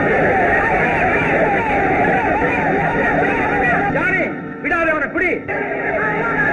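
A crowd of many voices shouting and yelling over one another. The din drops briefly near the end, leaving a few separate shouts.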